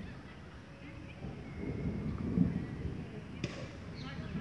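Low rumbling noise on the handheld camera's microphone, swelling in the middle, with one sharp click about three and a half seconds in.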